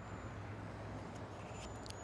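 Faint outdoor background noise: a steady low hum under a light, even hiss.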